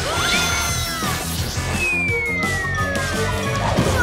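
Cartoon background music with a falling-whistle sound effect, a single tone gliding steadily down in pitch for about a second and a half, then a thud of a landing just before the end.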